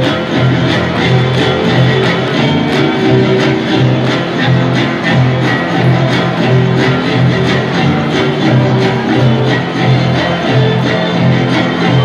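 Violin with strummed guitars playing a steady dance tune, string music in the Huastecan style.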